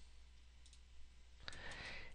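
A few faint, short clicks from a computer mouse and keyboard over a low steady hum.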